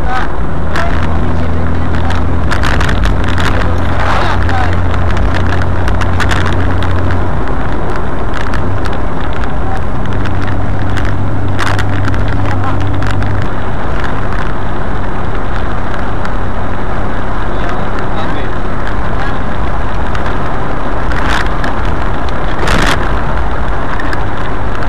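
Car engine running as the car drives along an open road, with steady road and wind noise over it. The low engine note shifts a few times, near the start, about a third of the way in and just past the middle, with occasional brief knocks.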